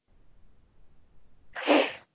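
Faint room noise, then near the end a short, sharp burst of breath noise close to the microphone.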